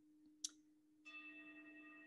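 Near-silent pause with a faint steady hum and a short click about half a second in, then, from about a second in, faint sustained bell-like tones from a quiet background music bed, ringing on steadily.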